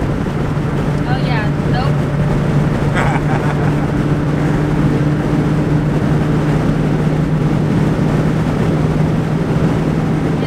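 Cabin sound of a 2020 Dodge Charger Scat Pack's 392 HEMI V8 cruising at highway speed: a steady low engine drone over tyre and road rumble.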